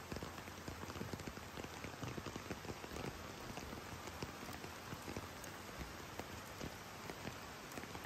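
Steady rain falling on a flooded yard, an even hiss dotted with many small drop hits.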